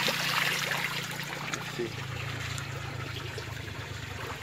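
Water trickling and dripping out of the mesh of a hand dip net just lifted from a creek, tapering off as it drains.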